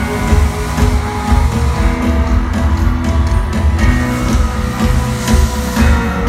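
Loud live rock music from a band on stage, with a strong low end, heard from among the audience.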